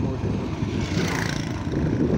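Suzuki 150cc motorcycle running steadily while riding, its engine and road noise mixed with wind on the microphone. A brief rush of noise comes about a second in.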